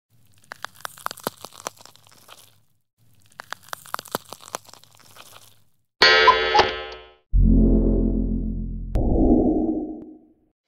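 Editing sound effects: two bursts of scattered crackles and clicks like old-film scratch noise, then a bright ringing hit that dies away in about a second, a deep boom that fades slowly, and a rushing noise near the end.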